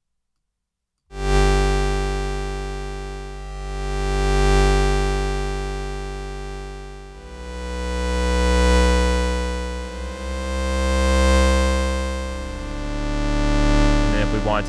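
Looped synthesizer waveform sample played in the Kontakt sampler as held keyboard notes: the sound enters about a second in and changes to new notes about seven seconds in, with slow swells in loudness. The loop sustains seamlessly, without clicks at the loop points.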